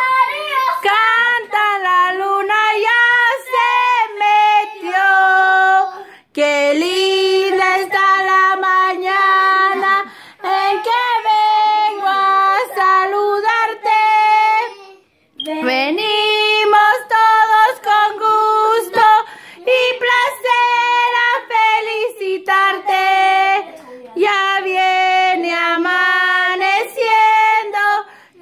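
Children and women singing a song together in unison with held notes, breaking off briefly about six and fifteen seconds in.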